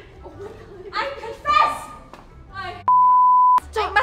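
A single steady high-pitched bleep tone, under a second long, about three seconds in, dubbed over the sound track with all other sound cut out beneath it, as used to censor a word. Before it, women's voices.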